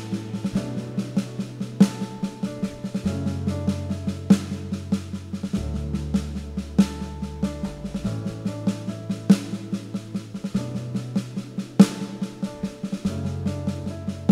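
Live worship band in a pulled-back instrumental passage: a drum kit keeps a steady pattern of light strokes on the snare, with a heavier accent about every two and a half seconds, under an electric bass holding long low notes that change every few seconds and sustained keyboard chords.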